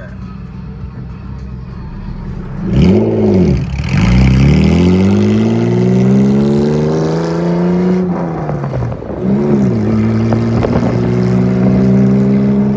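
Engine of a modified Honda NSX revving once about three seconds in, then accelerating away with its pitch climbing. About eight seconds in the pitch drops, it revs again, and then it climbs once more.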